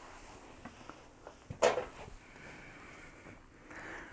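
Office chair seat being raised on its gas-lift cylinder: a few faint clicks from the height lever and mechanism, then one short, louder knock about one and a half seconds in, followed by a faint rustle.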